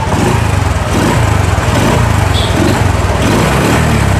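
Thai-built Honda Wave 110 single-cylinder four-stroke motorcycle engine idling steadily, an engine the seller says has been fully reworked.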